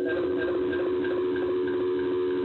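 A steady electronic tone of several low pitches sounding together, unbroken and unchanging, coming over a dial-in phone line.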